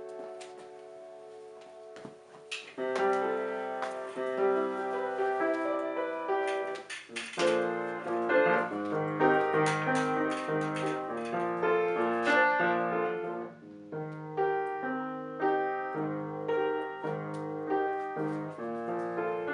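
Acoustic upright piano played solo, chords and a melody line; it starts softly and grows fuller a couple of seconds in, with brief lulls between phrases about halfway through and again later.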